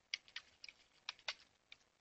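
Computer keyboard keys pressed in a faint, irregular run of about ten quick taps as a word is deleted from a terminal command line.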